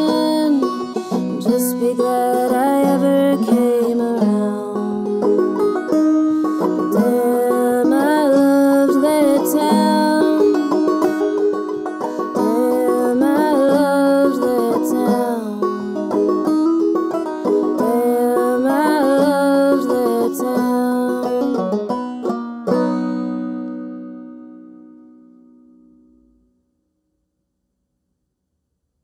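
Clawhammer banjo playing an instrumental passage, closing on a final chord about 23 seconds in that rings and fades away to silence.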